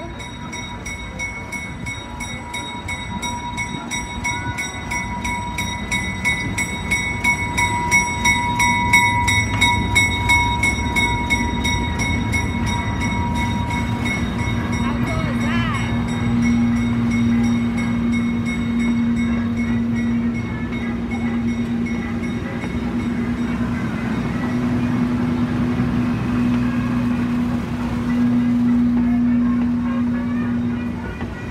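Diesel switcher locomotive rolling slowly past with a steady, rapidly pulsing ringing, typical of a locomotive bell, which fades out about halfway through. Passenger coaches then roll by under a low steady hum.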